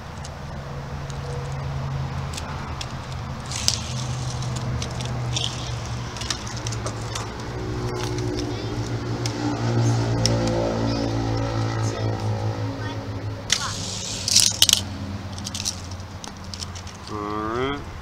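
A nearby motor vehicle's engine hum, steady and even, swells to its loudest about halfway through and fades. A few seconds from the end comes a quick run of clicks and rattles as die-cast toy cars are let go from the start gate and run down a plastic Hot Wheels track.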